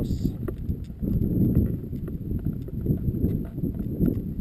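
Wind buffeting the camera's microphone: an uneven low rumble that rises and falls in gusts, with a few faint knocks from the camera being handled.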